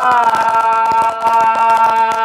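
A man singing Tày–Nùng folk song, holding one long, steady note with a slight dip in pitch near the start.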